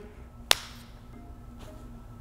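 A single sharp snap about half a second in, then faint background music with a few soft held notes.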